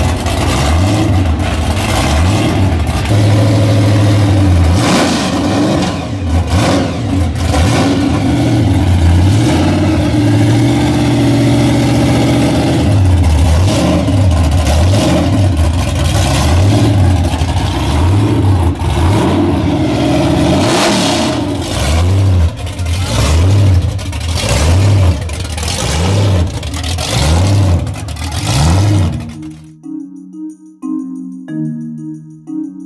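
A gasser drag car's 392-cubic-inch V8 running loud, its throttle blipped again and again so the engine note swoops up and falls back about once a second.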